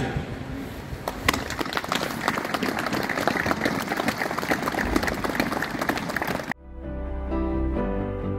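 Crowd applauding steadily for about six seconds. It cuts off suddenly and background music begins.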